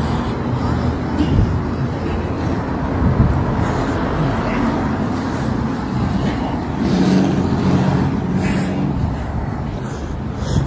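Steady low rumble of outdoor street noise with people's voices, picked up on a handheld phone.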